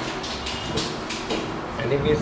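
Indistinct low talk in the room, broken by short hissing noises.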